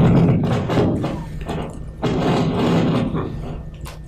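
Wireless lapel microphone glitching: loud crackling, distorted bursts with a steady low hum. The first burst ends about half a second in and a weaker one follows about two seconds in. The speaker takes the glitch for a dying transmitter battery.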